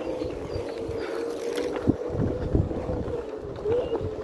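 Onewheel electric board's hub motor whining at a steady pitch that wavers slightly and briefly rises near the end, with wind on the microphone and low thumps as the wheel runs over the bumpy dirt trail.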